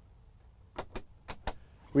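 A few sharp clicks in quick succession in the second half, over a faint low hum: the overhead dome-light switches of a truck cab being pressed.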